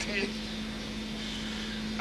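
A pause in a man's talk: the tail of one spoken word at the very start, then steady background hiss with a constant low hum.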